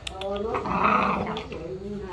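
A Bắc Hà puppy growling at its food, a drawn-out growl that starts about half a second in and lasts over a second, with a few light clicks of kibble near the start.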